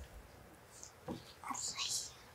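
A woman's quiet, breathy whispered vocal sounds in short bits, with a sharper hiss near the end.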